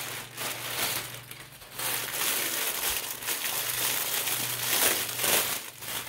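Plastic packaging crinkling and rustling in uneven bursts as it is handled and opened.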